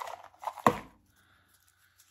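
A hand rummaging among folded paper slips in a clear plastic tub and drawing one out: rustling and light plastic clicks, with one sharp knock just under a second in.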